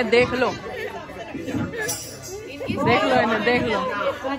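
Women chattering and laughing together, voices overlapping.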